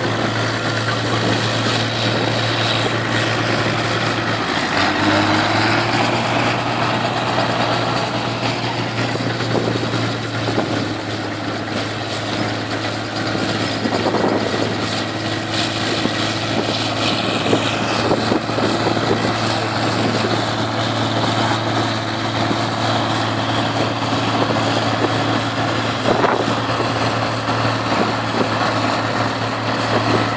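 Heavy diesel machinery running steadily, with a constant low engine hum under a dense mechanical din.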